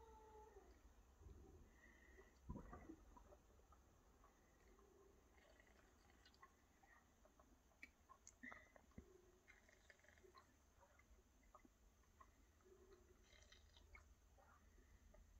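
Near silence with the faint sounds of a cow drinking from a water bowl: scattered soft slurps and small clicks, and one brief low knock about two and a half seconds in.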